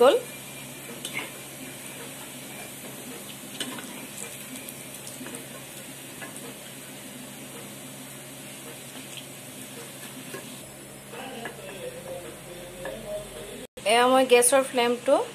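Onion-and-besan pakoras deep-frying in hot oil in an iron kadai: a steady sizzle, with a few light clicks of a metal spatula against the pan as the finished pakoras are turned and lifted out.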